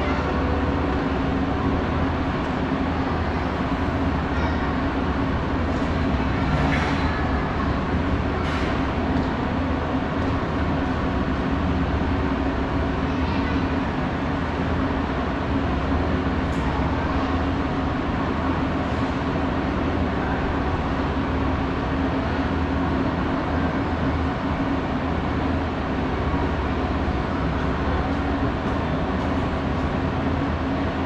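Mitsubishi pallet-type autoslope (inclined moving walkway) running steadily: a continuous mechanical drone with a steady low hum.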